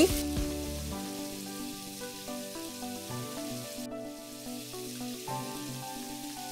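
Mutton, yogurt and tomato puree sizzling softly in hot mustard oil in the pan, under slow background music of held chords that change every couple of seconds.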